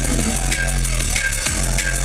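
Drum and bass DJ set played loud over a festival sound system, with a repeating bass note and regular drum hits.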